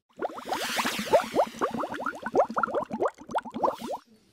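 Water-drop sound effect: a quick, irregular run of short plops, each rising in pitch, several a second. A shimmering swoosh opens it in the first second.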